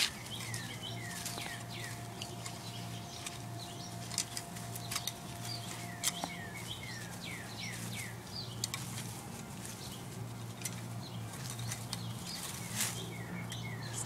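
Small birds chirping again and again, each call a short falling note, with irregular scrapes and knocks of a garden hoe working into soil.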